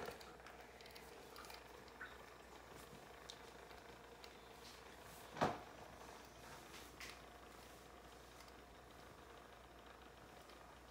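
Small clicks and knocks of a stainless-steel electric milk frother jug being handled on its base on a countertop, with one sharper knock about five and a half seconds in, over a faint steady hum.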